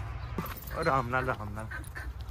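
A man's herding calls to drive water buffaloes: a short run of voiced syllables, about a second long, starting about half a second in, over a low steady rumble.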